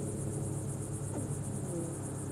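Crickets chirping in a steady, high-pitched, finely pulsing chorus, with a low steady hum beneath.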